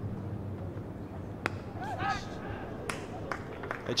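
A single sharp crack of a cricket bat striking the ball about one and a half seconds in, over a steady low hum of ground ambience, followed by a brief faint call from a voice.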